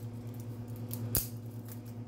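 Dry veggie spaghetti noodles being snapped by hand, with one sharp snap about a second in, over a steady low hum.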